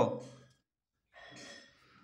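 A man's speaking voice trails off, then after a short silence a faint, brief breath about a second and a half in.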